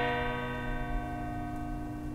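A clock bell's struck note ringing on with many steady overtones and slowly fading away.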